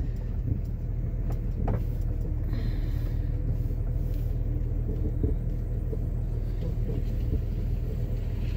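Van driving slowly over a rough grass track, heard from inside the cabin: a steady low engine and road rumble, with a few short knocks now and then.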